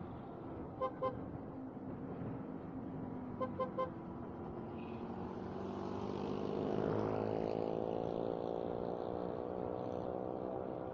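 Short vehicle horn beeps over steady road and traffic noise: two quick beeps about a second in, then three more about three and a half seconds in. From about halfway an engine's pitch climbs steadily as a vehicle accelerates.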